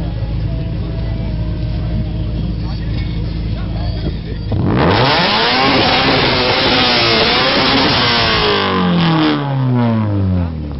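Honda Integra Type R (DC2) four-cylinder idling, then revved hard at the tailpipe of a standing exhaust-noise (dB) measurement. The revs shoot up suddenly about halfway through, are held high for about four seconds, and fall back near the end.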